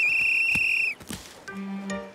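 Lifeguard's whistle sounding one long, steady blast that cuts off about a second in, followed by a few short, low musical notes.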